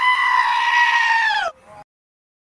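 A high-pitched cry held for about a second and a half, rising in at the start and dropping in pitch before it cuts off.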